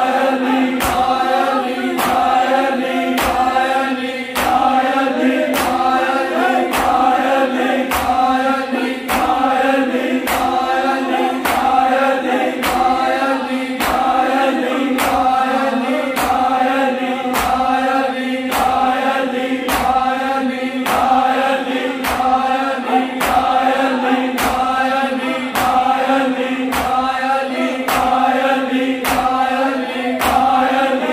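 A group of men chanting an Urdu noha (Shia lament) together, with synchronized chest-beating (matam): many open hands slap bare chests at once, at a steady beat of about one slap a second.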